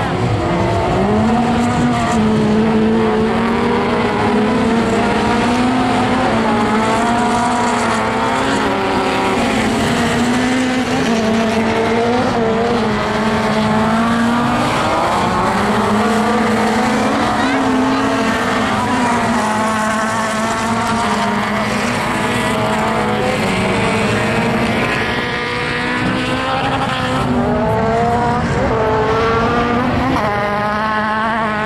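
A pack of racing touring cars running loud and continuous on a dirt circuit, their engine notes rising and falling as they accelerate and lift through the turns.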